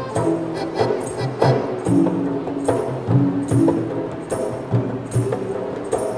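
Live Rong Ngeng ensemble music: an accordion plays held melody notes over hand drums beating a steady rhythm.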